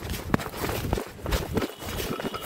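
Footsteps of someone walking along a dirt track with a handheld camera, a step about every half second.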